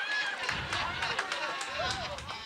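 Small audience reacting to a joke: several voices laughing and calling out over one another, with scattered hand clapping.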